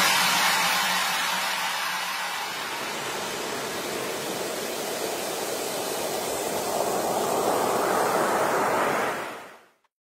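Ocean surf: waves breaking and washing in as a steady rush, swelling a little late on and then fading out to silence just before the end.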